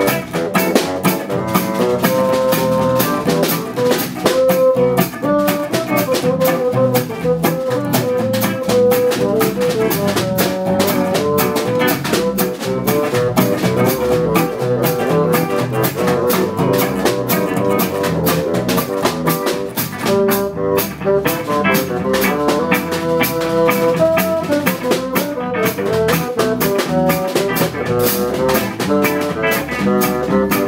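Small jazz band playing an instrumental passage: a stepping melody line over guitar, electric bass guitar, bassoon and percussion keeping a steady beat.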